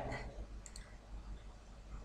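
Two faint clicks of a computer mouse, close together, a little under a second in.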